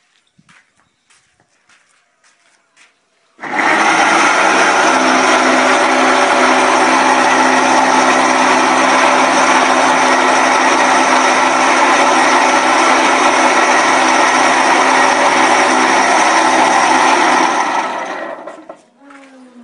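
An electric motor starts abruptly about three and a half seconds in and runs loud and steady at one pitch, then stops near the end.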